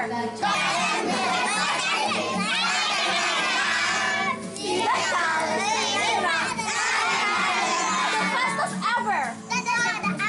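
A group of young children shouting and calling out together, many voices at once, with music playing underneath and a brief lull about four seconds in.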